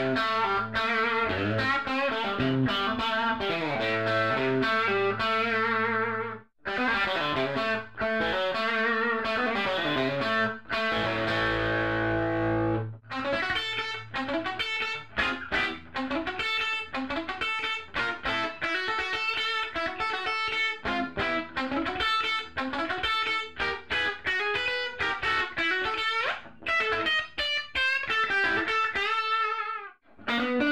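Electric guitar played through a 1960 Fender tweed Deluxe tube amplifier, miked at the speaker: a run of picked notes and chords with a short pause about six and a half seconds in and a chord left ringing a little before the halfway point.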